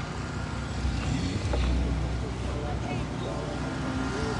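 Outdoor street ambience: a steady low rumble of traffic and wind, swelling briefly in the middle, with faint distant voices near the end.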